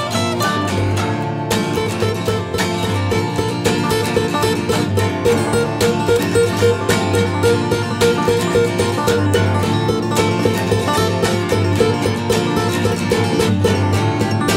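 Two acoustic guitars playing an instrumental passage of a folk-rock song, with quick picked notes over chords and no singing.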